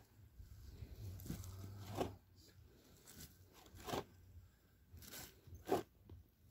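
Loose garden soil being filled into a planting hole around a bare-root sapling: faint, irregular crunching and scraping strokes as the earth is moved in.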